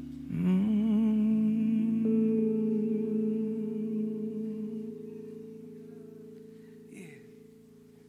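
The close of a live worship song: a man's voice holds one long sung note with vibrato over a sustained keyboard chord. Both die away slowly toward the end.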